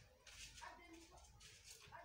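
Near silence: faint, indistinct background sounds picked up by a phone microphone.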